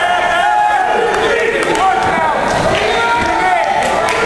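Spectators at a wrestling match shouting and calling out to the wrestlers, several voices overlapping at once, with a few short sharp knocks.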